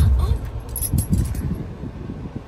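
Light metallic jingling and clinking, a quick cluster about a second in, inside a car cabin, over a low rumble at the start.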